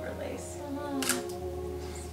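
A camera shutter fires once, a sharp click about a second in, under quiet talk in the room.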